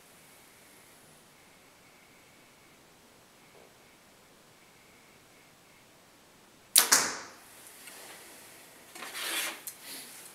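Bear compound bow held at full draw in low room tone, then shot about seven seconds in: two sharp cracks in quick succession, the string's release and the arrow striking the target, with a short ringing tail. A brief rustle of clothing follows near the end as the bow is lowered.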